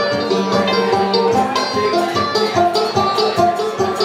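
Live small swing band playing an instrumental passage: strummed banjo and drums keep a steady beat under held saxophone and trombone notes.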